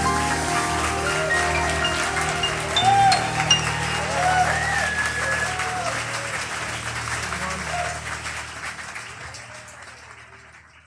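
A band's held closing chord rings out under audience applause, cheers and whoops. It all fades out over the last few seconds.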